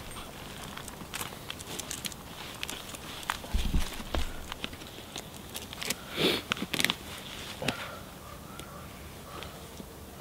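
Rustling and scattered light clicks from handling the lower foot strap and buckle of a tree-climbing spur, with feet shifting on leaf litter. A dull thump comes about three and a half seconds in, and a louder rustle a little past halfway.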